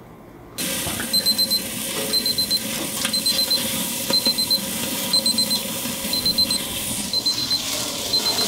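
Electronic alarm beeping like a digital alarm clock: quick groups of four high beeps repeating about once a second, starting suddenly about half a second in, over a steady hiss.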